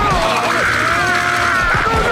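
Cartoon fight-cloud brawl sound effects: a continuous rattling, ratchet-like clatter with quick low thumps, with wavering pitched sounds layered over it.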